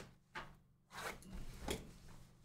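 Cardboard trading-card boxes being slid and set down on a tabletop mat by hand: a few short, faint scrapes and soft knocks.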